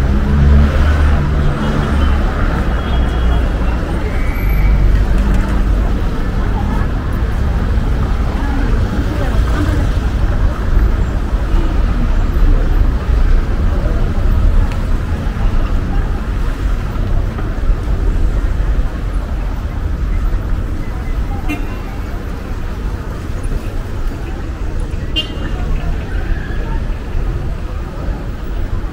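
Busy street ambience: cars and taxis running past on a cobbled street, mixed with passers-by talking. It eases somewhat after about twenty seconds.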